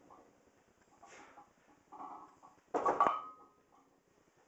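A 185 lb loaded barbell lowered back onto the supports of a wooden power rack during pin presses, landing a little under three seconds in with a sharp clank and a brief metallic ring. Fainter effortful breaths come just before it as the bar is pressed.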